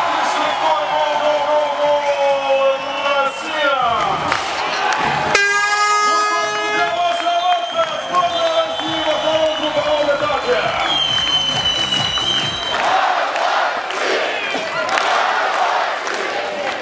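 Stadium crowd cheering and shouting, with a horn blaring for about a second and a half about five seconds in.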